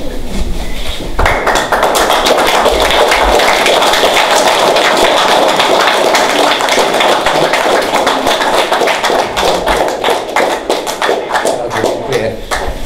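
Audience applauding: many hands clapping together, breaking out suddenly about a second in and keeping up steadily.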